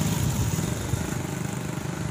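An engine running nearby, a steady low hum that slowly fades.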